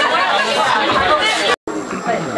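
Many people talking at once in a crowded room, overlapping chatter with no single voice standing out. It breaks off abruptly about one and a half seconds in, at an edit cut, and quieter talk resumes.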